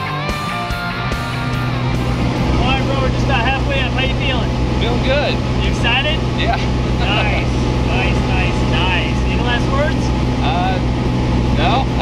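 Small single-engine aircraft's engine running with a loud steady drone, heard from inside the cabin, with people talking over it. Music fades out in the first couple of seconds.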